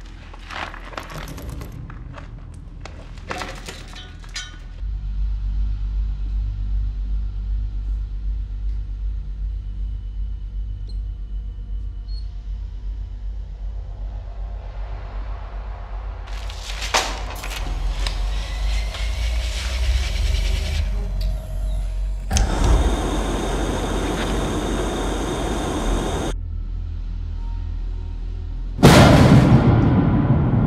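Ominous film score and sound design: a steady low rumbling drone that sets in a few seconds in, after some scattered knocks. About two-thirds of the way through, a loud hiss swells up and then cuts off suddenly, and a loud sudden hit comes near the end.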